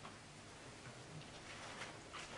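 Quiet lecture-hall room tone with a few faint, scattered clicks: small handling noises at a lectern while the lecturer sips from a paper cup.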